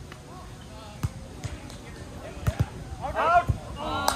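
A volleyball being struck several times: sharp slaps of hands and forearms on the ball during a rally. Players' voices call out over it, loudest about three seconds in.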